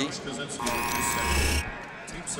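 An arena horn or buzzer sounds once, a steady buzzing tone held for about a second before cutting off suddenly, over crowd noise.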